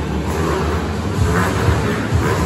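Several motorcycle engines running and revving as the riders circle inside a steel-mesh globe of death.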